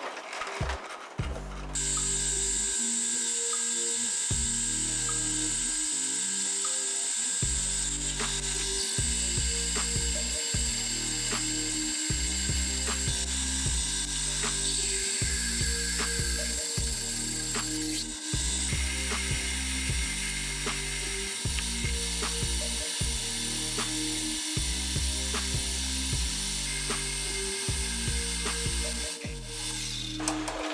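Metal lathe starting up about two seconds in and running steadily, its gears whirring while a large twist drill cuts into a steel block held in a four-jaw chuck. Background music with a steady beat plays underneath.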